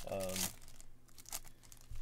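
Foil wrapper of a baseball card pack crinkling and tearing as it is opened, loudest in the first half-second, then a few short crackles.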